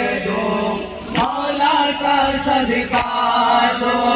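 Men chanting a nawha, a Shia lament, together in a sustained sung line. A sharp slap comes about every second and three quarters, from hands striking chests (matam) in time with the recitation.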